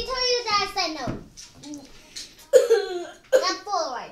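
A young girl's voice making high-pitched wordless silly sounds in two runs, with a quieter gap between. The second run ends in a falling squeal.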